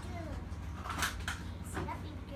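Young children's voices, brief and indistinct, with a few short noises of toys being handled about a second in.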